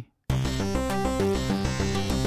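Layered arpeggiated synth presets in UVI Falcon, several parts set to Omni and playing together, starting abruptly about a quarter second in. A dense pulsing texture of quickly stepping notes over a steady low bass.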